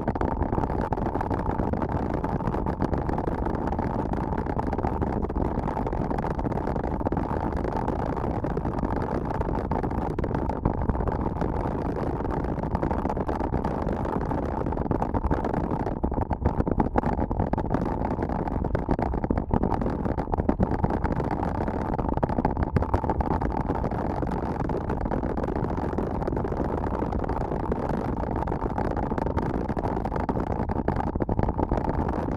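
Steady, muffled rush of riding wind on an action camera's microphone, mixed with mountain-bike tyres rolling on a gravel road at around 30 km/h. A few faint clicks come about halfway through.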